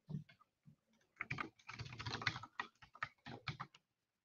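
Typing on a computer keyboard: a quick, faint run of keystrokes starting about a second in.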